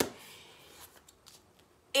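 A sharp click, then faint, soft handling sounds of a cookbook being picked up.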